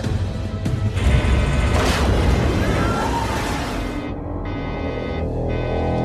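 Tense film score under a loud rumbling crash, with a sharp surge about two seconds in: the sea drill tearing into the frigate's hull. The crash dies away about four seconds in, leaving sustained ominous music chords.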